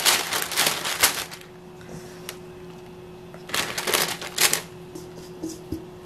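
Crumbly mugwort and brown-rice flour dough being dropped and pressed by gloved hands into a steamer basket lined with parchment paper: rustling and crinkling of the paper, in a burst during the first second and again about four seconds in. A faint steady hum runs underneath.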